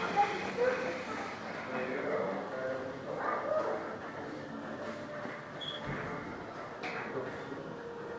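Indistinct background voices of other people in a large room, with a brief click about seven seconds in.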